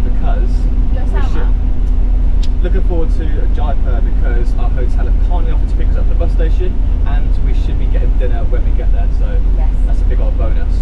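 Steady low rumble of a sleeper bus on the move, heard from inside its passenger berth, with a voice talking over it.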